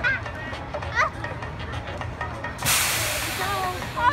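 A sudden hiss of compressed air from a Boomerang roller coaster's pneumatic system, starting about two-thirds of the way in and fading, over a steady low rumble, with scattered voices of onlookers.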